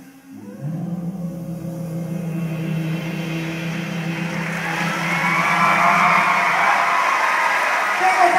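A live band holds a final long note, and audience applause and cheering come in about three seconds in and grow louder.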